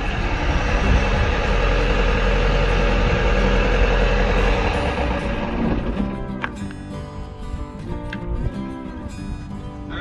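Sailboat's inboard auxiliary engine running, then shut off at the panel's stop button a little past halfway; the sound drops away as it stops, leaving steady shifting tones.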